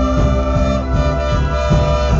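A live band playing: two brass horns carrying a sustained melody over keyboard, electric guitar and a steady drum beat.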